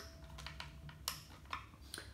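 A few faint clicks from a screwdriver working the Torx screws in the plastic shaft housing of a Stihl FS 45 string trimmer as the screws are loosened, over a low steady hum.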